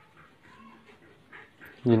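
Mostly faint, low background sound, then a man's voice speaking Vietnamese near the end.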